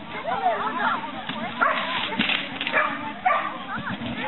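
A dog barking and whining in short calls that rise and fall in pitch, over people's voices in the background.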